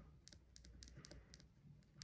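Faint scratching and ticking of a multi-colour pen writing on paper.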